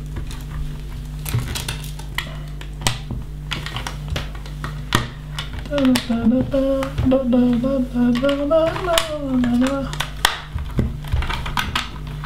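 LEGO bricks clicking and rattling as small plastic pieces are sorted and pressed onto a roof plate, with sharp clicks throughout. From about six to ten seconds in, a man hums a few wavering notes over the clicking.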